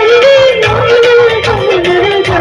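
A woman singing through a stage microphone over a live band, holding a long wavering note, with keyboard and a steady drum beat underneath.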